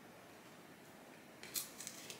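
Faint room tone, then about one and a half seconds in a quick cluster of three or four short, sharp, scratchy rustles as a hand handles the potted asparagus fern and its grow light.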